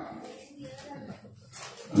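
Faint, low-level voice sounds.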